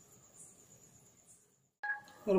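Faint, steady, high-pitched insect trill, likely a cricket, with a soft chirp about once a second over quiet room tone. It drops out into brief dead silence near the end.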